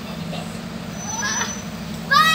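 A vehicle engine idling with a steady low hum, and a brief rising sound a little over a second in.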